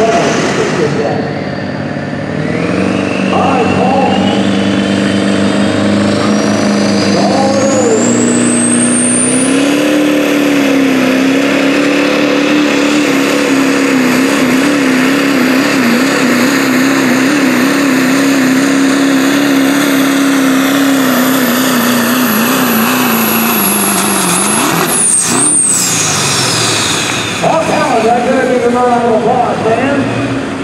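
A 2000 Ford Super Duty pickup's turbo-diesel V8 pulling a sled at full throttle. The revs climb over the first several seconds with a rising turbo whistle, hold high with a wavering pitch, then drop away about 25 s in as it comes off the throttle. A man's voice is heard near the end.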